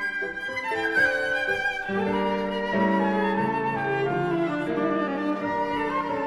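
Viola and flute playing classical chamber music together in sustained, overlapping melodic lines, the bowed viola carrying the lower voice.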